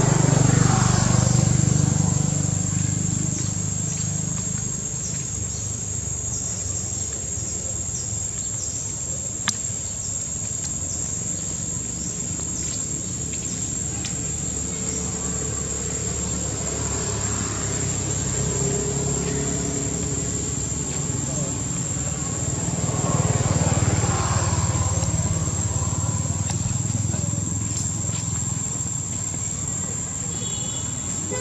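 Outdoor ambience dominated by a steady high-pitched insect drone, over a low rumble that swells near the start and again about three-quarters of the way through. There is a single sharp click about nine seconds in.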